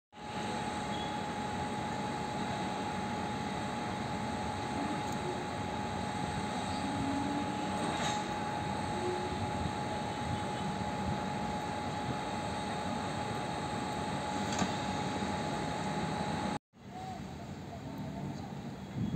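WAP-5 electric locomotive running with a steady hum and a constant high whine from its machinery. The sound cuts out suddenly near the end and comes back quieter.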